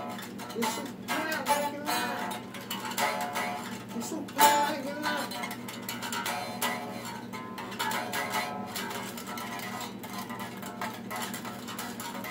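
Electric guitar picked with a plectrum: a run of quick single notes and short phrases, with one sharp, louder accent about four and a half seconds in.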